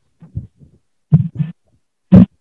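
Several short, dull knocks and bumps from a phone or webcam being handled close to its microphone over a video call, with a louder pair a little past a second in.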